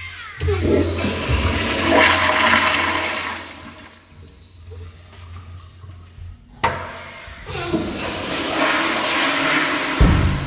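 Commercial flush-valve toilet flushing: a loud rush of water that eases off after a few seconds. A sharp click comes about six and a half seconds in, followed by another rush of water.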